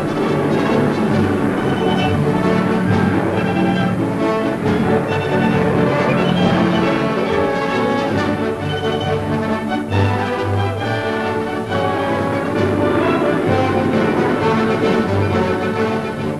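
Orchestral newsreel score playing continuously, with sustained notes shifting in pitch.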